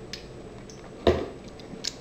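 A man drinking from a bottle: quiet except for small mouth clicks and one louder gulp about a second in.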